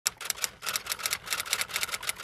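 Typing sound effect: a quick, even run of keystroke clicks, several a second.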